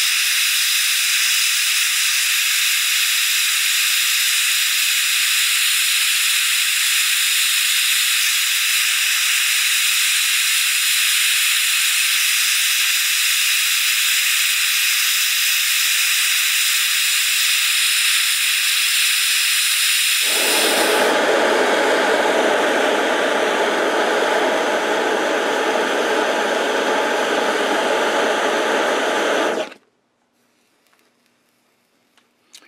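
Propane torch flame hissing steadily as it heats a low-carbon steel rod toward cherry red. About two-thirds of the way through, the sound becomes fuller and lower. It cuts off suddenly just before the end.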